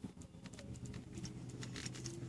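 Faint chewing of a mouthful of soft pretzel bun and hot dog, with small irregular wet mouth clicks.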